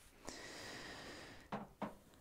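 A person's breath out, lasting about a second, followed by two brief voiced sounds in quick succession.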